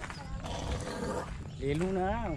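Footsteps scuffing along a gravel lane, with a low rumble of wind or handling on the microphone. Near the end a person's voice starts up, drawn out and rising and falling in pitch.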